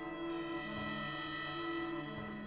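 Harmonica playing slow, held notes over sustained orchestral strings, the low notes changing about every half second.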